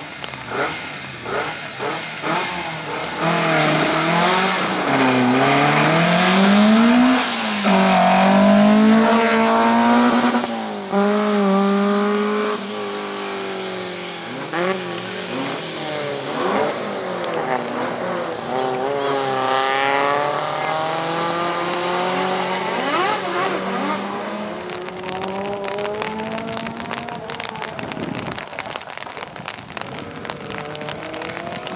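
Peugeot hatchback slalom race car's engine revving hard, its pitch climbing steeply and dropping again several times through gear changes and lifts between the cone chicanes. Loudest near the middle, then running a little quieter.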